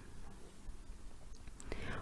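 A quiet pause with faint low hum and room noise, and a soft breath and small mouth clicks near the end.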